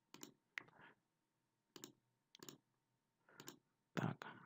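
A handful of faint computer mouse clicks at uneven intervals.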